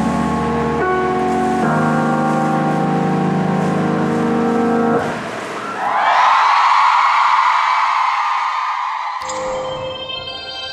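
The ballad ends on held chords that stop about five seconds in. The audience then cheers and applauds, fading over about three seconds. Just before the end a bright electronic channel-logo jingle begins.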